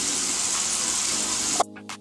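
Bathroom faucet running, with water splashing over hands as they are rinsed in a sink. The water cuts off suddenly about one and a half seconds in, leaving background music with a steady beat.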